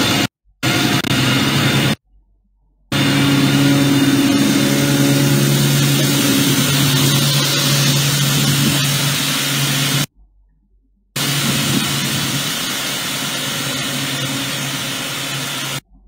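Heavy diesel road-construction machinery running steadily, with a low engine hum under a loud hiss. The sound cuts out abruptly a couple of times and then resumes.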